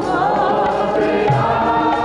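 Sikh kirtan: several voices sing a devotional melody in unison with the harmonium, the lead voice wavering through ornamented glides. Tabla strokes come back in the second half.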